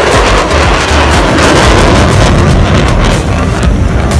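Loud, steady jet noise from an F-35A's single F135 turbofan engine as the fighter flies past, drowning out the PA music.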